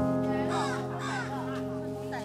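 Background music holding a steady chord. A few brief high, pitch-bending calls or voices sound over it about half a second to a second in.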